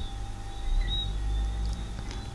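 Low steady background hum and rumble, with two faint short high chirps about a second apart.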